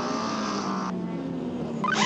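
Porsche 963 hypercar's twin-turbo V8 running on track, its pitch falling slowly, with a quicker falling whine near the end. A radio hiss cuts off suddenly about a second in.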